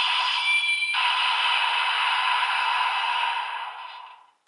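DX Dooms Geats Raise Buckle toy playing an electronic sound effect through its small speaker, thin with no bass: a noisy whooshing burst that changes about a second in, holds, then fades out near the end.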